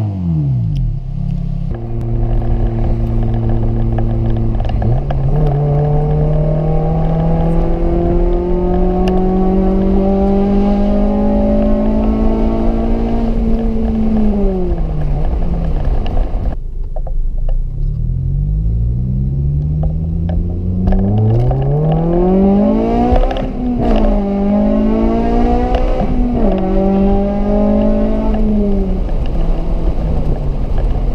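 2006 Honda Civic Si with its muffler deleted, driven at open throttle and heard from inside the car. Its 2.0-litre four-cylinder engine note climbs steadily in one long pull, then drops away. After a quieter stretch it rises and falls again in several shorter, quick pulls.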